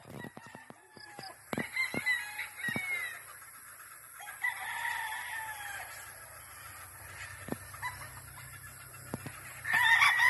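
A flock of cockerels crowing and clucking, short calls overlapping at a distance with one longer crow in the middle. Louder crowing comes in just before the end.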